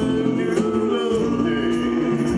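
Oberkrainer folk band playing live: singing over steady band accompaniment.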